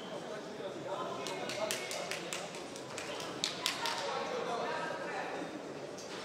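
Gloved punches landing in quick flurries: a cluster of sharp slaps about a second in and another around three and a half seconds. Behind them runs a steady murmur of crowd voices and shouts in the hall.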